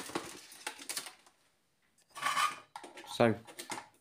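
Clattering and clinking of tools, wires and parts being rummaged in a plastic toolbox as a soldering iron in its metal coil stand is lifted out, a quick run of rattles in the first second or so.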